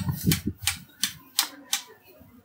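A run of six sharp clicks, about three a second, with a low voice murmur at the start.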